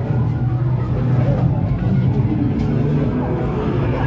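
A deep, steady rumble with people's voices faintly behind it.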